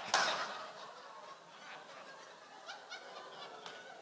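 Audience laughter dying away over about the first second, followed by a few scattered, short individual laughs from the crowd.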